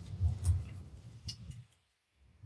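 A couple of faint clicks from the push-button of a small USB LED charging light being switched on, over low rumbling handling noise from the hands and cable that stops about a second and a half in.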